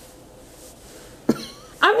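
A single short cough about a second and a half in, after a stretch of quiet room tone.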